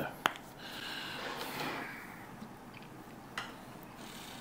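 Plastic honey squeeze-bottle cap clicking open just after the start, followed by soft handling sounds and a second small click later on.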